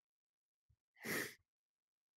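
A single short sigh, a breath let out close to a microphone for under half a second, about a second in; otherwise silence.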